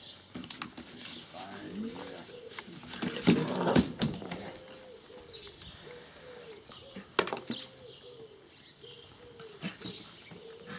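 A dove cooing over and over in the background, with a loud rustling stretch about three seconds in and a couple of sharp knocks about seven seconds in.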